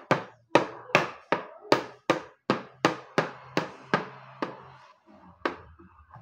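A wooden chess piece is tapped down again and again on a wooden chessboard. The sharp knocks come about three a second and become fewer and fainter after about four and a half seconds.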